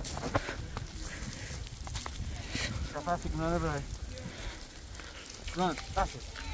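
A person's brief, wavering vocal sound, pulsing several times a second like a laugh, about three seconds in. It sits over a steady low rumble of wind and handling noise on the microphone.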